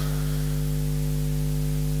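Steady low electrical hum with a constant hiss, mains hum carried by the handheld microphone's sound system.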